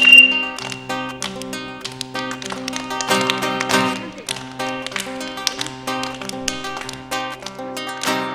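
Acoustic guitar strumming the opening of an Andean Christmas carol, with children's hand claps keeping time.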